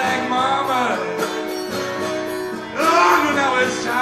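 Live solo acoustic guitar playing a country blues, with singing coming in louder about three seconds in.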